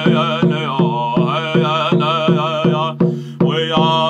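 A man singing over a steady drumbeat, struck on an upright hand-painted drum with a round-headed drumstick at about three to four beats a second. The voice breaks off briefly for a breath about three seconds in, then carries on.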